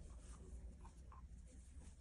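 Faint scratching and a few soft irregular ticks of yarn sliding over a Tunisian crochet hook as stitches are picked up, over a low steady room hum.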